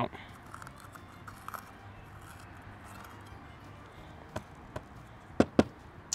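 A knife working inside jalapeño peppers to remove the seeds and veins: faint small scrapes and ticks, then four sharp clicks near the end.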